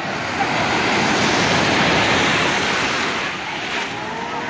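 Small surf breaking and washing up a sandy shore, a rushing wash that swells about half a second in and eases off near the end.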